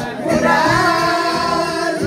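Several women singing loudly together along with music, drawing out long held notes.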